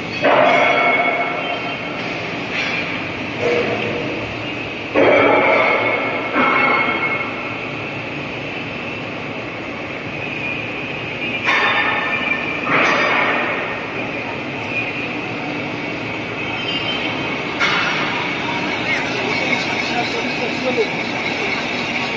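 A six-colour flexographic printing press with its die-cutting unit and conveyor running steadily: a continuous mechanical machine noise with a steady higher-pitched band, and louder surges a few times.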